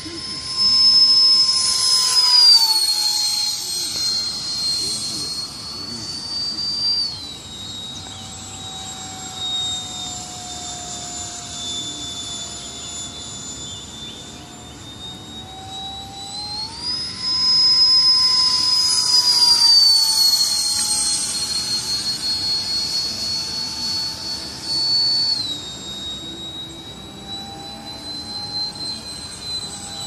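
70 mm electric ducted fan of a radio-controlled MiG-15 jet model whining in flight. Its high pitch steps down and back up with throttle changes. It is loudest on two close passes, near the start and a little past halfway.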